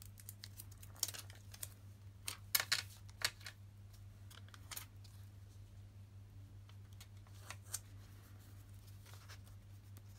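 Paper stickers being peeled off their backing sheet and pressed onto a journal page: short crackly rustles clustered in the first few seconds, then a couple of isolated ticks, over a faint low steady hum.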